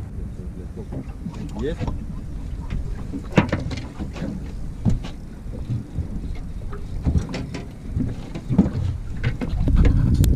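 Wind rumbling on the microphone by open water, with scattered handling knocks and faint voices.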